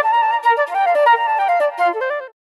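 GeoFlute, Audio Modeling's SWAM physically modelled flute in the GeoShred app, playing a solo melody. It is a quick run of short notes stepping up and down.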